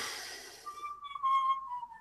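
A long, thin whistle held on one note, sagging slowly in pitch, after a short breathy hiss at the start.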